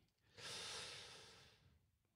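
A man's breath drawn in close to the microphone: one soft hiss lasting about a second, fading away.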